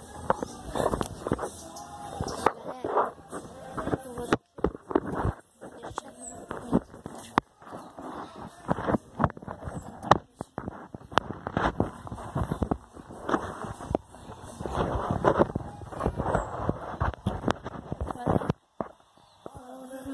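Rubbing and knocking of a phone's microphone as it is handled and moved about, with a voice murmuring at times; the sound cuts out briefly about four and a half seconds in and again shortly before the end.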